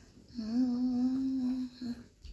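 A woman humming one steady, level note for just over a second, starting about half a second in.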